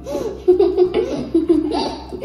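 Young girls laughing in quick, repeated bursts.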